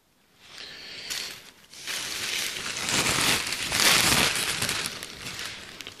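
Thin plastic bag crinkling and rustling close to the phone's microphone, starting about half a second in and loudest in the middle.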